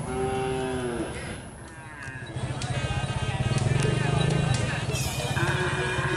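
A bull lowing once, a call that falls slightly in pitch over about the first second. From about two seconds in, music with a fast, steady drumbeat comes in and grows louder.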